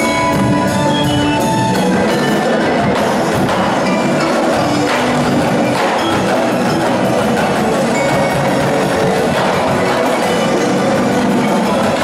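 Marching percussion ensemble playing: bass drums, snare drums and tenor drums struck in dense, steady rhythm, with pitched mallet percussion ringing over the drums in the first two seconds.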